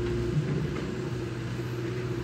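Long-reach excavator's diesel engine running steadily while the emptied bucket lifts away from the dumped mud, with a brief thump about half a second in.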